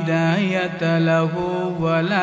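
A man chanting Arabic sermon-opening praise of God in a drawn-out melodic style, holding long steady notes with brief turns of pitch.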